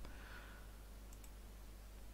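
Near-quiet room tone with a steady low hum and a couple of faint clicks of a computer mouse, here resuming playback of a video.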